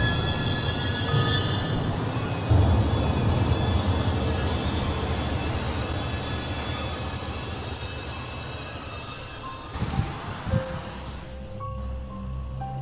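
Dark film-score music: a dense rumbling drone with sustained high tones that slowly fades. Two dull thumps come near the end, then a few soft held notes begin.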